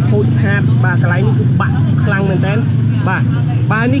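Voices talking throughout over a steady low drone.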